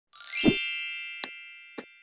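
Logo intro sound effect: a quick rising shimmer into a bright ringing chime with a low thump under it, fading slowly, then two short clicks about half a second apart.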